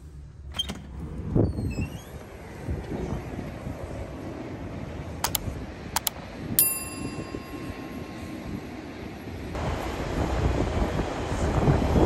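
A door's push bar clunks as the door opens, then open-air airport ambience with wind on the microphone. About five seconds in come two mouse-click sound effects and a bell ding from a subscribe-button overlay. Over the last couple of seconds a louder rush of noise builds.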